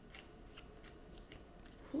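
A deck of tarot cards being handled in the hand: a few faint, short flicks of card against card at irregular intervals.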